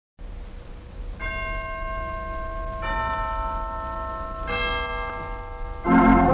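Three struck chime notes, each ringing on as the next sounds: the second higher than the first, the third the lowest. Organ music comes in loudly just before the end.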